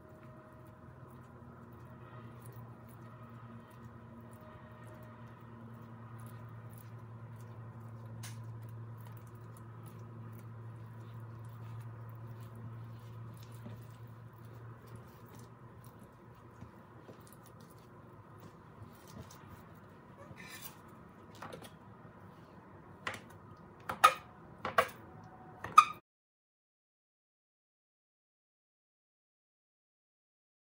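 Hands rolling soft dough into a log on a countertop, faint against a steady low hum. Near the end come about four sharp clicks and knocks in quick succession, then the sound cuts off abruptly.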